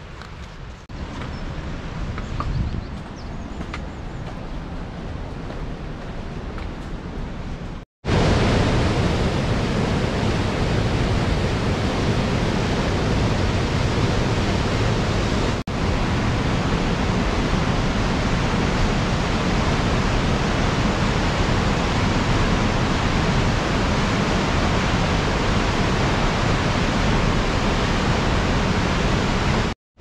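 A steady rush of river water. After a quieter stretch it sets in loud and abruptly about eight seconds in: the Casaño river running through its narrow gorge.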